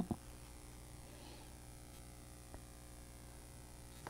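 Quiet room tone with a low steady hum and one faint tick about two and a half seconds in.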